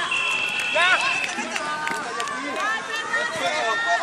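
Players and onlookers shouting and calling out across the field during a flag football play, with a thin steady high tone, like a whistle, held for about a second near the start.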